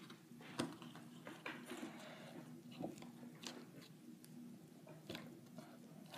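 Faint scattered clicks and scrapes of a Jefferson nickel being pushed into its hole in a cardboard coin folder, fingers rubbing on the card.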